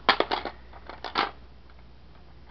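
Empty seashells clicking and clattering against each other as a hand rummages through a bowl of them: a quick run of clicks at the start, then two more about a second in.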